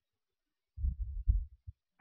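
Silence, then a quick cluster of low, muffled thumps on the microphone, lasting about a second and ending just before speech resumes.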